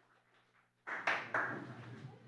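Handling noise on the podium microphone: two sudden rustling bumps, about a second in and again half a second later, as the next speaker settles at the microphone.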